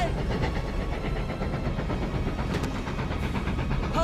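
Steam locomotive running, a steady heavy rumble with a faint rhythmic beat, as mixed into a film's sound effects. A steam whistle dies away just as it begins and sounds again right at the end.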